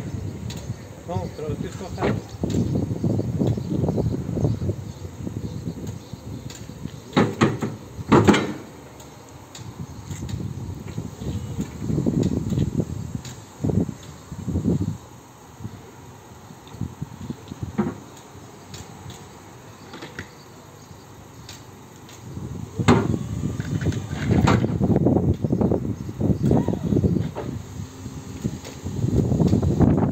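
Linde R14 electric reach truck working, its drive and hydraulic lift running in swells as the forks go under a steel stillage and raise it, with several sharp metal knocks as the forks strike the box.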